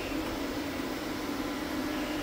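Walk-behind UV floor-curing machine running with its lamp on, its cooling fan giving a steady hum and whoosh while it cures the fresh floor finish.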